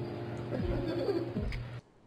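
Sound track of a streaming web video playing on the computer: low, wavering, coo-like tones over a steady hum, with two falling low sweeps. It cuts off suddenly just before the end.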